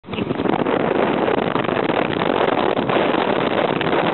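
Steady rush of wind on the microphone of a moving motorbike, with the bike's engine running underneath.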